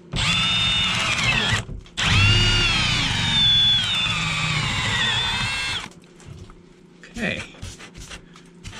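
Cordless drill boring a hole through a wooden framing rib in two runs, a short one and then a longer one of about four seconds. Its motor whine drops in pitch under load as the bit bites into the wood.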